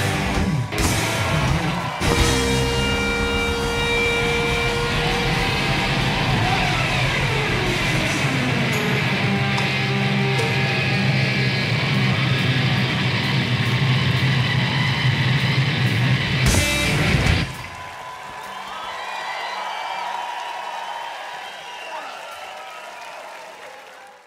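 Live rock band playing loud, with distorted electric guitar; the music cuts off suddenly about three-quarters of the way through, leaving a quieter wash of sound that fades away.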